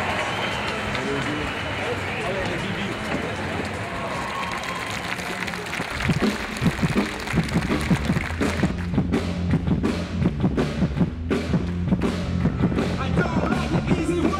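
Crowd noise from a large festival audience for about the first six seconds, then a live rock band starts playing, with a steady bass line and repeated drum hits.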